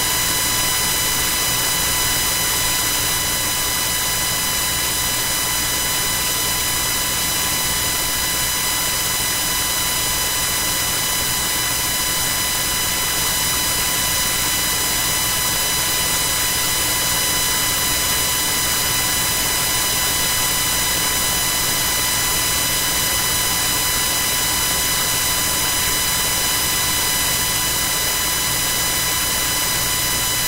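Steady telephone-line static on a conference call: an even hiss with a constant buzzing tone and no voices.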